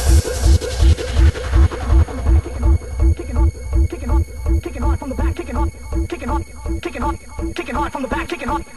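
Donk dance music from a DJ mix: a fast, steady kick drum, about two and a half beats a second, with a short bouncy pitched bass stab repeating between the beats.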